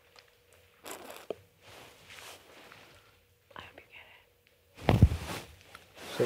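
Indistinct low vocal sounds and soft rustling in a small room, with a louder deep bump or rustle about five seconds in, over a faint steady hum.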